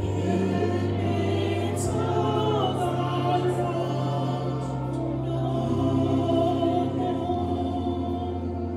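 Church choir singing a slow gospel hymn, with long held low notes underneath.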